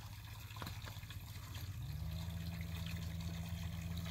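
Water trickling into a concrete water tank, over a steady low hum that grows louder about halfway through.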